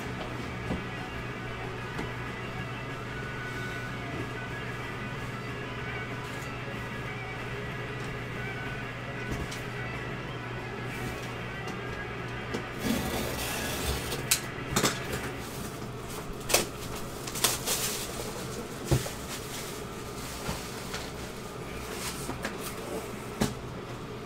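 Background music throughout. About halfway in, a cardboard box is handled and opened, with sharp clicks, knocks and rustling of cardboard and wrapping paper.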